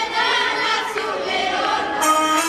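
A school choir of teenage voices, mostly girls, singing together.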